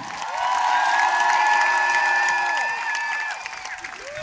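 Large concert crowd cheering and screaming as a performer comes on stage. Several long high screams are held together over applause, swelling about half a second in and dying down after about three seconds.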